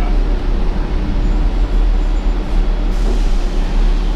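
Steady low rumble inside a 2015 Gillig Advantage transit bus, its engine running with road and cabin noise.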